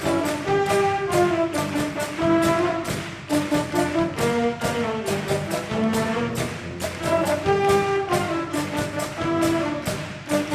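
Full wind band of saxophones, clarinets, trumpets, trombones and low brass with drum kit playing an upbeat pops number over a steady beat.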